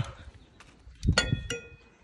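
Metal tongs clinking against a metal kebab skewer as chunks of meat are pulled off it: a couple of sharp clinks a little over a second in, the second one ringing briefly.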